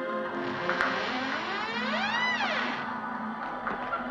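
A door creaking open, one rising-then-falling creak about two seconds in, over a steady ambient music drone.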